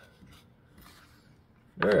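Faint rubbing and handling of a small wooden pencil box being turned in the hands, then a man's voice near the end.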